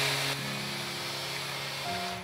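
Magic Bullet Mini personal blender running at full speed, its blade grinding rolled oats into flour with a loud, steady whir that eases slightly a moment after starting.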